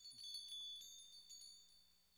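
Shop-door chimes ringing: several high metallic tones struck one after another, faint and fading out over about two seconds.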